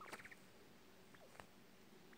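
Near silence, with a brief faint trilling chirp from a coturnix quail right at the start and a couple of faint ticks a little past a second in.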